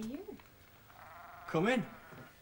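Sheep bleating: a short call at the start and a louder call about one and a half seconds in, its pitch wavering up and down.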